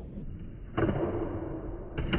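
Skateboard wheels rolling on a wooden floor, then a sharp pop near the end as the tail strikes the floor for an ollie.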